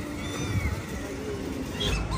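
A few faint thin, gliding animal calls and a short wavering call in the middle, over steady outdoor background noise.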